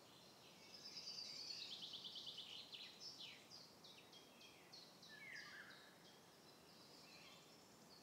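Faint birdsong over near-silent room tone: a rapid high trill about a second in, then a run of short chirps sliding down in pitch, fading out after about six seconds.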